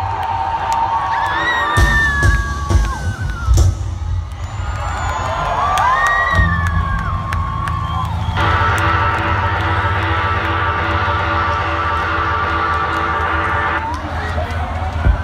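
Live band playing to a cheering crowd, with whoops and shouts over a steady bass line. From about eight seconds in the band holds one sustained chord, which cuts off just before the end.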